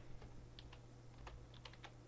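Faint keystrokes on a computer keyboard, a handful of scattered taps, over a steady low electrical hum.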